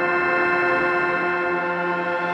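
Sustained electronic synthesizer chord held steady, with a rapid ticking texture underneath, in the instrumental intro of a 1990s Russian electronic pop song.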